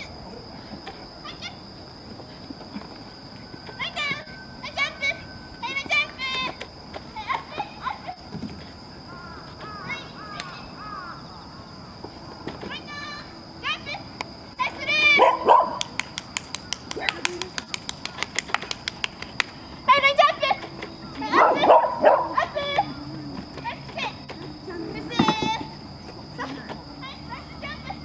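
Short shouted commands to a small dog running an agility course, with the dog barking a few times; the loudest bursts come in clusters, and a steady high-pitched whine runs underneath.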